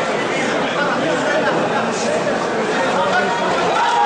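Many overlapping voices in a large hall: crowd chatter and calls from around the competition mats, with no single voice standing out.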